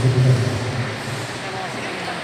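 Voices calling out, loudest at the start and dying away after about a second.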